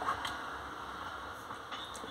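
Quiet room tone: a faint, steady background hiss with no distinct sound events.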